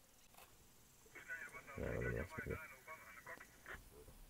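A faint, tinny voice, narrowed as if heard through a radio or phone speaker, lasting about two seconds from about a second in, with a brief low murmur in the middle.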